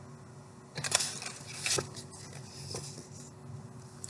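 Paperback book being handled and turned around: short bursts of paper rustling and light knocks, about one second in and again shortly after.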